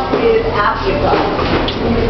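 Indistinct talk from people in a room, voices overlapping with no clear words.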